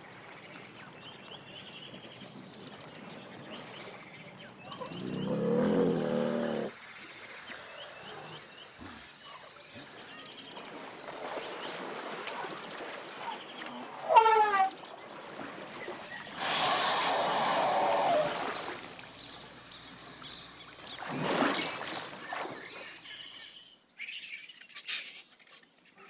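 A pair of elephants playing in a waterhole: a low call about five seconds in, rushes of splashing water later on, and small birds chirping in the background.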